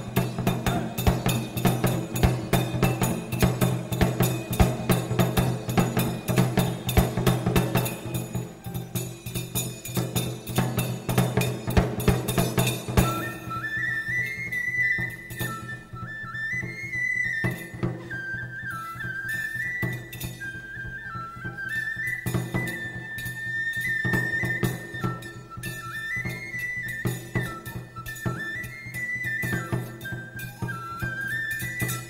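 Live ensemble music: Japanese taiko drums beat a dense, driving, repetitive rhythm over a steady low tone. About thirteen seconds in, the drumming thins and a high melody line takes over, stepping up and down over lighter percussion.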